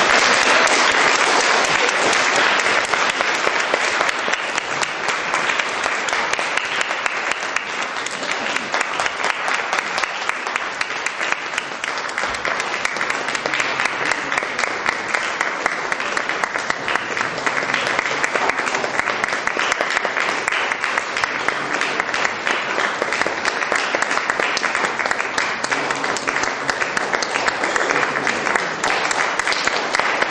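Audience applauding steadily: dense, even clapping.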